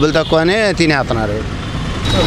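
A man talking, with a motor vehicle going past in the background; the vehicle's low rumble is heard most plainly in the pause near the end.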